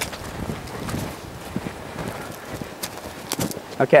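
Footsteps of a three-year-old colt walking on grass alongside a person, soft and uneven, with a few sharp clicks about three and a half seconds in.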